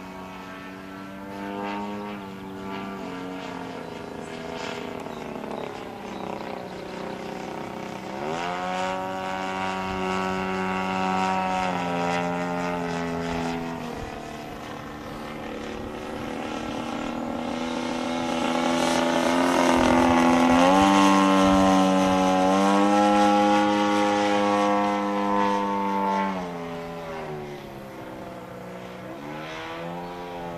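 RCGF 55cc two-stroke gas engine and propeller of a giant-scale RC aerobatic plane in flight, its note dipping and climbing in pitch several times as it flies. It is loudest about two-thirds of the way through, then drops in pitch and climbs again near the end.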